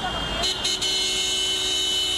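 A vehicle horn sounds about half a second in and is held steadily as one long blast, over the low rumble of street traffic.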